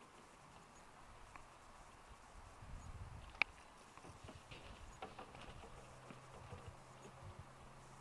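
Mostly quiet, with faint low knocks and rumbles and one sharp click about three and a half seconds in.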